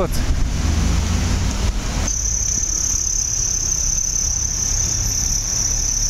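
Street traffic with a vehicle rumbling past, fading about two seconds in; from then a steady high-pitched whine holds.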